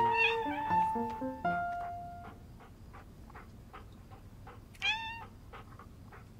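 A kitten meows once, briefly, about five seconds in, over soft background music: a short run of stepped notes that fades within the first two seconds into a faint, even ticking beat.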